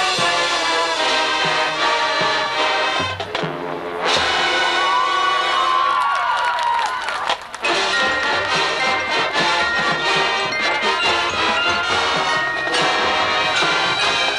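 Marching band playing, brass and percussion together. The full band comes back in suddenly about four seconds in, and there is a brief dip in volume about seven and a half seconds in.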